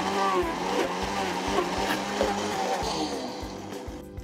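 Countertop blender running on frozen berries and yogurt while the tamper is pushed down through the lid. The mix is too thick and hard to blend. The motor noise fades away near the end.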